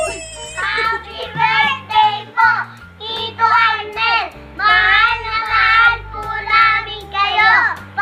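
Small children singing together in high voices over quiet background music. At the very start, an excited adult shout trails off.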